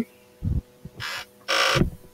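A soft low thump, then two short breathy exhales into a close microphone, the second louder.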